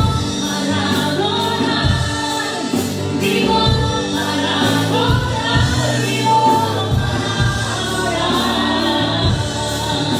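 Live gospel worship music: voices singing a Spanish-language praise song, with a band's steady drum beat underneath.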